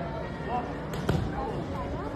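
Strikes landing on hand-held focus mitts: two sharp smacks in quick succession about a second in.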